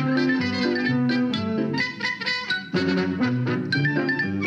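Lively band music with brass and a steady beat. It thins out briefly about two seconds in, then the full band comes back.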